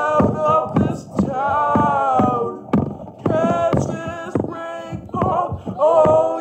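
A voice singing unaccompanied, in phrases with long held notes.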